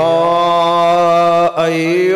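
A man's voice chanting a long, steadily held note in melodic Arabic sermon recitation, with a brief break about one and a half seconds in.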